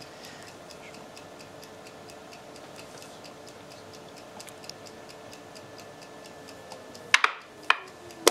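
Steady, even ticking of a clock beside a backgammon board. About seven seconds in come a few sharp clicks as the player finishes the move with the checkers and reaches for the game clock.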